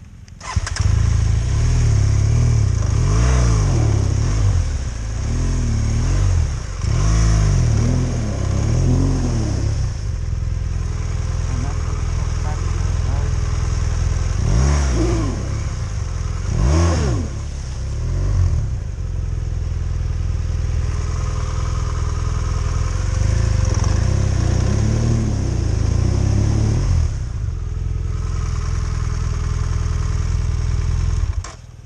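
BMW adventure motorcycle engine starting about half a second in, then revved up and down several times while the bike is stuck in deep mud ruts.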